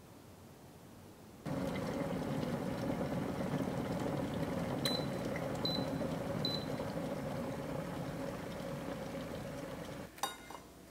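Glass electric kettle boiling: steady bubbling of water that starts suddenly about one and a half seconds in. Three short high beeps sound about five to six and a half seconds in.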